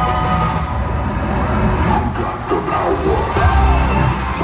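Live pop concert music played loud over an arena sound system, recorded from the audience on a phone, with some crowd screaming and cheering in the second half and the bass swelling near the end.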